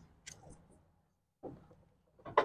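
Near silence, broken by two faint short sounds, one just after the start and one about one and a half seconds in.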